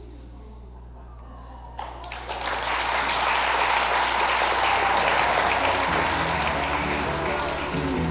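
Audience applauding, breaking out suddenly about two seconds in and holding steady, with music coming in underneath near the end.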